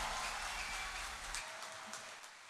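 A live band's final chord dying away: the low bass ring fades out about one and a half seconds in, leaving faint hiss and a few small clicks.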